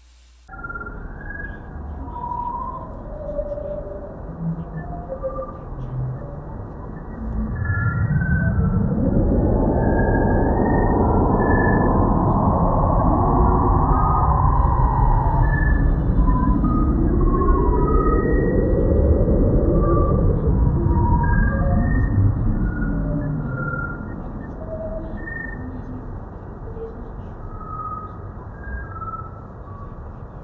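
Sonification of the Hubble image of the Eagle Nebula pillars, the picture's brightness turned into sound: short scattered bleeps at many different pitches for the stars. From about seven seconds in, a louder, dense low rumbling band with higher tones over it swells in for the pillars, then drops back to the scattered bleeps at around 23 seconds.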